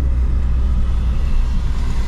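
Steady low rumble of a 2007 Volkswagen Polo 1.6 turbo's EA111 eight-valve engine and its tyres, heard from inside the cabin while cruising at an even pace.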